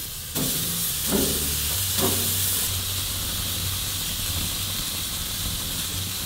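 Raw ground-beef burger patties sizzling on a hot grill grate: a steady hiss that steps up a little under a second in as the meat goes on. The patties are wet meat, defrosted from frozen, full of liquid.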